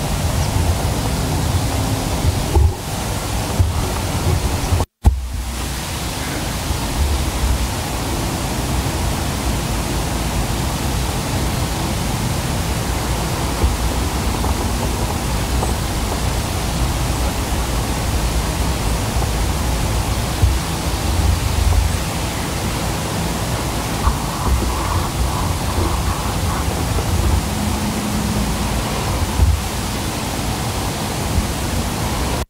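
Steady rushing wind noise on an outdoor microphone, heaviest and gustiest in the low end. The sound cuts out completely for a moment about five seconds in.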